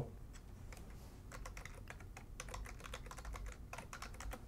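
Faint, irregular keystrokes on a computer keyboard: a username and password being typed into a login form.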